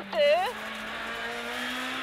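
Honda Civic Type-R R3 rally car's 2.0-litre four-cylinder engine heard from inside the cabin, pulling at steady revs at speed. Its pitch creeps up about a second and a half in.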